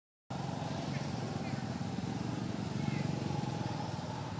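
A motor vehicle engine running steadily, a low even drone with no rise or fall.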